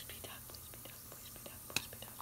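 Faint small clicks and crackles of fingers picking apart a softened, dissolving toy capsule in water, with one sharper click near the end.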